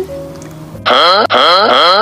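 A short comic meme sound effect: after a brief lull, about a second in, a loud pitched, musical sound sweeps upward three times in quick succession.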